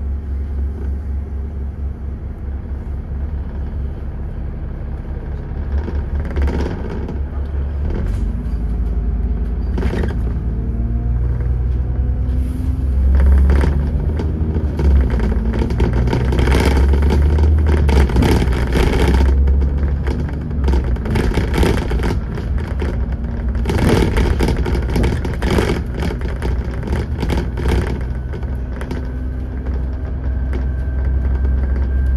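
Dennis Trident 2 double-decker bus with Alexander ALX400 body, heard from inside while driving along: a steady low engine and road rumble that grows louder after the first few seconds, with repeated bursts of rattling from the bodywork and fittings.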